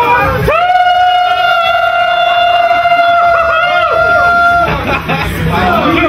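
A person's voice holding one long, high, steady note for about four seconds, with other voices of a lively crowd around it.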